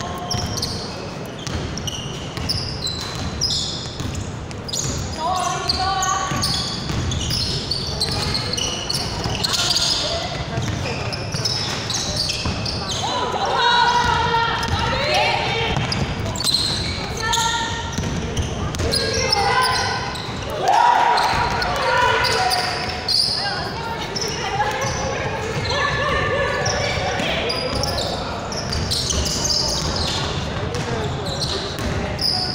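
Basketball bouncing on a hardwood court in a large indoor hall, with players' voices calling out. Short high squeaks come throughout, from shoes on the floor.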